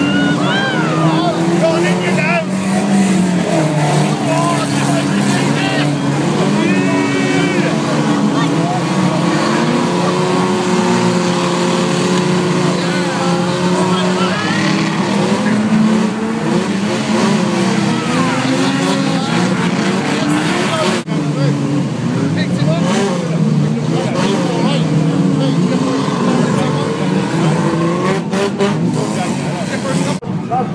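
Many banger-racing car engines revving hard at once, their pitches rising and falling over one another in a continuous din.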